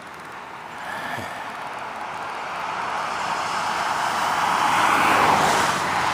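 A car passing on a two-lane highway: the road and tyre noise swells steadily for several seconds, peaks about five seconds in, then eases off.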